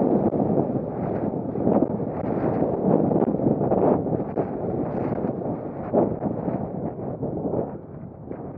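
Wind buffeting the camera's microphone: a loud, uneven rumble that swells and dips in gusts.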